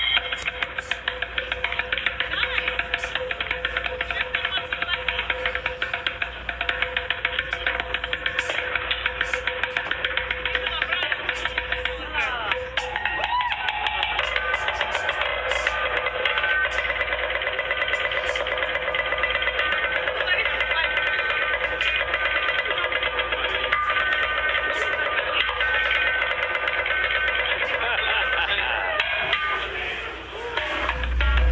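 Busker drumming fast, continuous patterns on upturned plastic buckets and a cymbal, the cymbal ringing over the rapid strikes.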